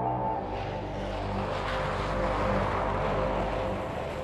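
A jet-like whooshing rush, the sound effect of a flying title, swells in over sustained synthesizer tones. It is loudest around the middle and eases toward the end.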